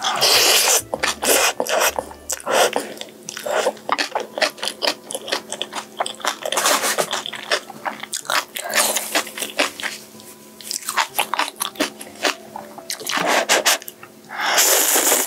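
Close-miked chewing of a spoonful of kimchi, cabbage and mixed-grain rice, with irregular wet crunches and bites. The first second and the last second or so are the loudest.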